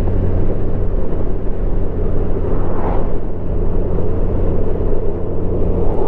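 Steady wind and road rush of a 2019 Honda Gold Wing Tour DCT at cruising speed, with the low, even hum of its flat-six engine underneath.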